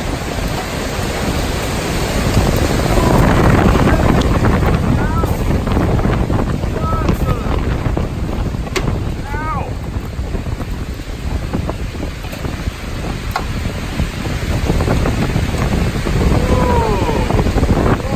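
Severe thunderstorm winds, thought to be a downburst, blowing hard and buffeting the phone's microphone. A loud, steady rush that swells in gusts, strongest about three seconds in and again near the end.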